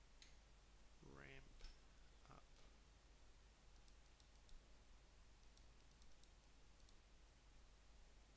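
Faint computer mouse clicks in two quick clusters, the first about four seconds in and the second between five and seven seconds in, over near-silent room tone.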